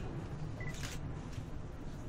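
Low, steady rumble of wind around a swaying cable-car gondola, with a brief faint high beep and a couple of faint clicks about a second in.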